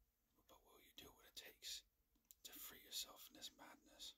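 A man whispering in two phrases, with a short pause between them about two seconds in.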